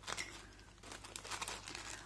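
Small clear plastic bag crinkling faintly as it is handled and filled, with scattered light crackles.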